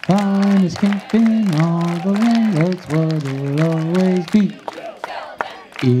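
A group of young voices singing a camp song together in unison, moving from one held note to the next.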